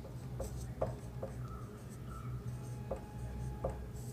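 Marker pen writing on a whiteboard: a few short, faint strokes and scratches of the tip on the board, over a steady low hum.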